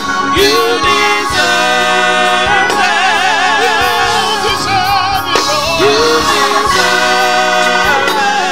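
Gospel music: voices singing long held notes with a wide vibrato over instrumental accompaniment with a steady beat.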